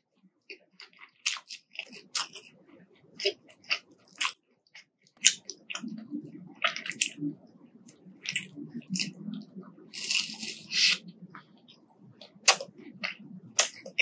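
Close-miked crunching bites into breaded chicken nuggets, then wet chewing with sharp crackles of the crisp coating, a loud crunchy burst about ten seconds in. Scattered light clicks of the food being handled come first.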